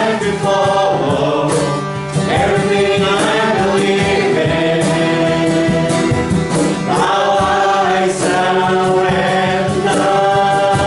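A worship song: several male and female voices sing together over a strummed acoustic guitar, with a regular strummed beat.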